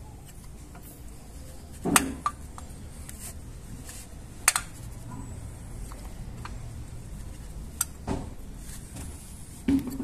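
Screwdriver prying against a cast-iron brake caliper to press the piston back into its bore: a few sharp metal knocks and clicks, a heavier one about two seconds in, another near the middle and two lighter ones near the end.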